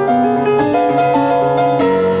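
Slow solo piano music: held notes and chords that change every half second or so.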